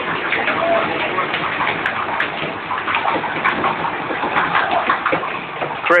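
Miniature 7¼ inch gauge train rumbling and clattering through a tunnel, a loud echoing roar with voices mixed in, which falls away suddenly at the very end as the train comes out.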